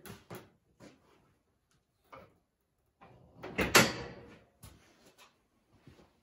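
Wooden flatbed dump bed on an angle-iron frame being let down by hand onto a UTV, with a few light knocks and then one heavy clunk a little under four seconds in as it comes to rest.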